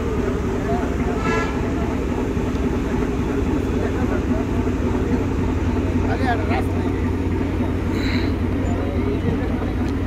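Steady low drone of ferry diesel engines, with voices in the background and a short high horn toot about a second in.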